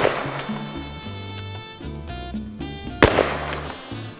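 Smith & Wesson Model 629 .44 Magnum revolver firing over background music: the report of a shot fired just before the start dies away, and a second loud shot follows about three seconds in.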